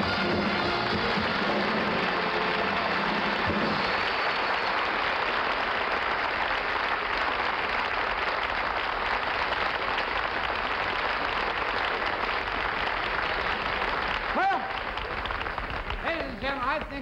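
A studio audience applauding at length, with the band's final bars dying away in the first few seconds.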